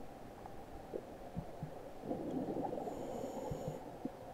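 Scuba diver breathing through a regulator underwater, with a burst of exhaled bubbles about halfway through and a few short low knocks.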